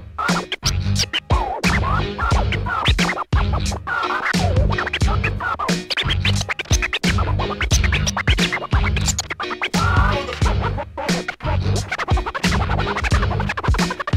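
Vinyl scratching on a Technics SL-1200MK2 turntable: a record pushed back and forth under the stylus in quick rising and falling strokes, chopped into short cuts at the mixer's crossfader, over a boom-bap hip hop beat with a heavy bass line.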